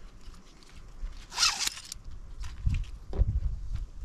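Webbing strap pulled quickly through a RollerCam cam buckle to undo it: one short zipping rasp about a second and a half in, followed by a few low thumps from handling.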